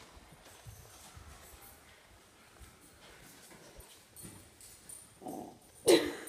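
Faint knocks and shuffling of movement, then near the end a short pitched dog sound followed by a louder, sharp one.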